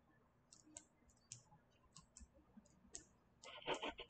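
Near silence with faint, scattered short clicks, and a brief faint voice near the end.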